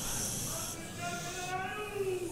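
A steady high hiss that starts at once and cuts off suddenly after about a second and a half, over faint voices.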